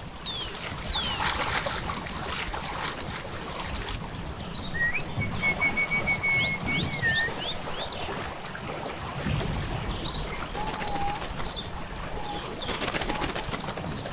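Wild birds calling: scattered short high chirps and falling whistles, with one steady rapid trill of even notes lasting about two seconds near the middle.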